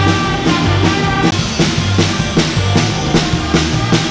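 Live band playing: a drum kit keeping a steady beat under electric bass, electric guitar and keyboard, with trumpets holding a line over the first second or so.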